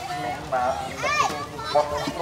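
Several high-pitched voices of girls and women chattering and calling out over one another.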